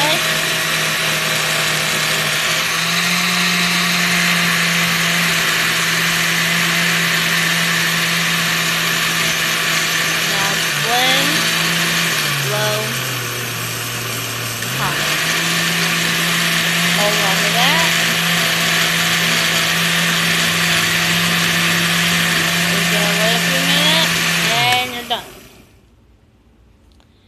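Oster 10-speed countertop blender motor running on high while puréeing a green smoothie, a steady hum. Its pitch steps up about three seconds in, drops for a couple of seconds about halfway as the speed is changed, climbs back, and winds down with falling pitch near the end.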